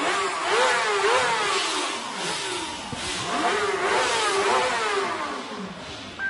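An engine revving up and down several times, its pitch rising and falling in repeated swells.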